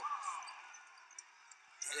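Faint basketball-arena ambience that dies away to near silence, with two faint knocks past the middle, a basketball bouncing on the hardwood court as a new possession is brought up.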